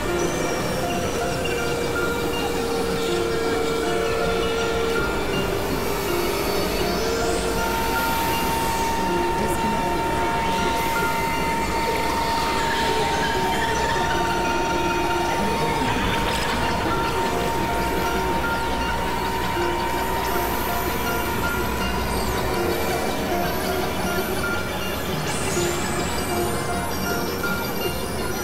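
Experimental electronic noise music: a dense, steady wall of synthesizer drone and hiss with held tones layered in. A long high tone comes in about a third of the way through and holds for over ten seconds.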